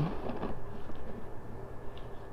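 Room tone: a steady low hum with faint background noise and no distinct events.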